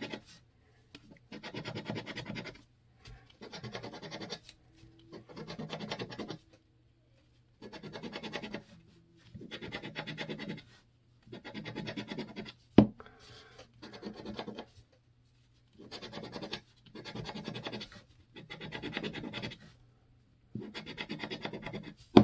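A coin scraping the coating off a scratch-off lottery ticket, in about a dozen rasping strokes of a second or so each with short pauses between. One sharp click stands out about thirteen seconds in.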